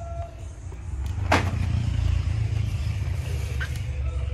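A low rumble that swells about a second in, with one sharp plastic click or crackle from a blister-packed toy card being handled.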